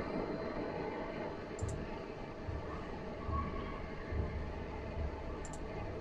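A Digital Radio Mondiale (DRM) shortwave broadcast on the 49 m band, received by a one-tube 6J1 SDR receiver and heard as a steady hiss of digital noise, with no voice or music. A couple of faint clicks.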